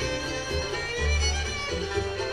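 Bluegrass string band playing an instrumental passage, a fiddle leading over pulsing upright bass notes and mandolin.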